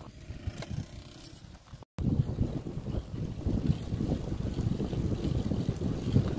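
Wind buffeting the microphone while moving along an open dirt road: an uneven low rumble. It cuts out completely for a moment just before two seconds in, then comes back louder and gustier.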